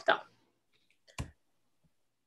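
A single short click about a second in, in otherwise dead silence: a computer mouse click advancing a presentation slide. The tail of a spoken word comes just before it.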